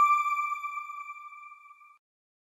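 The closing sting of a TV channel's logo ident: one sustained high ringing tone that fades away steadily over about two seconds.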